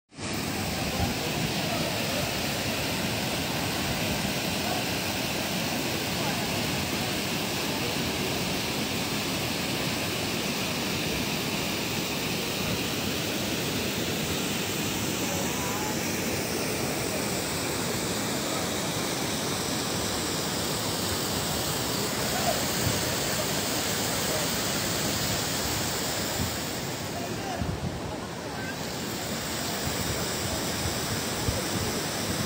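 Water pouring over a masonry weir's spillway: a steady rushing that drops a little near the end.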